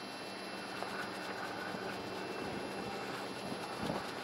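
Diesel locomotive idling steadily, with a brief low knock just before the end.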